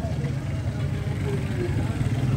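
Street traffic dominated by motorcycle engines running, a steady low hum, with faint voices in the background.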